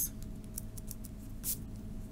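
Pen and hand brushing lightly over notebook paper: a few short, faint scratchy sounds, the clearest about one and a half seconds in.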